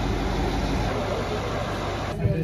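Schafbergbahn diesel rack-railway locomotive idling steadily, a low, even engine sound with a noisy hiss over it.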